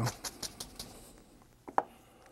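A large oil-paint brush tapping on the canvas, the taps fading out within the first second, followed by one sharp knock near the end.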